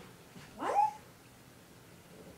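A single short vocal call rising in pitch, about half a second long, near the start.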